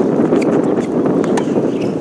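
Tennis rally on an outdoor hard court: a few short sharp clicks of racket strikes, ball bounces and shoe scuffs over a steady low rumble of wind on the microphone.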